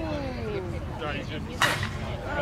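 A slowpitch softball bat hitting the ball about a second and a half in: one sharp crack with a short ring. Before it, voices call out across the field.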